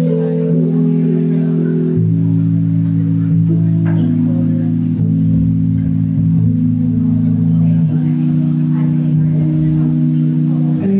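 Live band playing a slow instrumental song intro: sustained chords on guitar, bass and keyboard, changing every couple of seconds.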